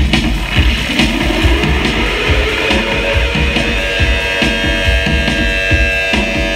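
Live rock band playing loudly: electric guitar and drum kit, with a note rising in the first second and then held, ringing guitar chords over steady drumming.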